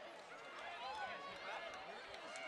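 Faint, distant voices of a crowd of spectators counting down to the start of a race.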